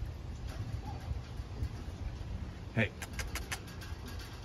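Light metallic clicking, a quick run of five or six clicks about three seconds in, as puppies' claws strike the wire-mesh floor of a metal kennel, over a low steady rumble.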